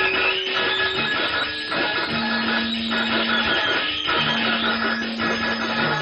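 Live free-improvised music on guitars: a dense, continuous, noisy texture with long held low notes.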